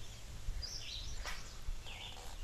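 Quiet outdoor ambience with a small bird chirping twice in short high calls, and a faint tap a little past halfway.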